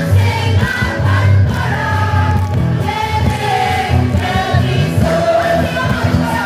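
Live band music with singing voices carrying the melody over a strong, steady bass line and electric guitars, played loud.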